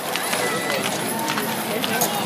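People talking among a parade crowd along a street, with scattered sharp taps and clicks over a steady street noise.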